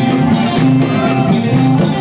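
Molam band playing live: a steady beat under a melody that bends in pitch.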